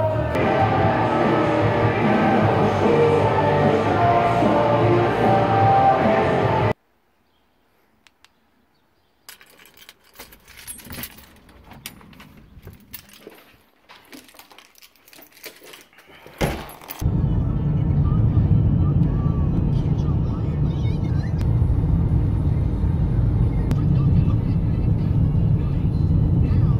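Background music for the first several seconds, cutting off suddenly to a near-silent gap, then scattered faint clicks and knocks. From about halfway on, the steady low road and engine noise of a car driving, heard inside the cabin.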